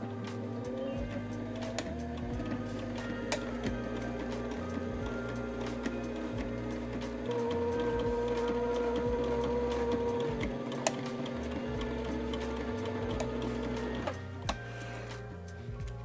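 Sailrite Ultrafeed LSZ-1 walking-foot sewing machine stitching a straight seam through two basted layers of canvas. The motor picks up speed at the start, runs louder for a few seconds in the middle, and stops about two seconds before the end.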